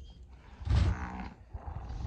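A horse blowing hard through its nostrils right at the phone: one rough, noisy burst lasting under a second, a little past a quarter of the way in.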